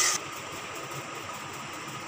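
A steady faint hum. In the first instant a spatula's scrape and sizzle in the kadai of thickening milk mixture is heard, then cut off abruptly.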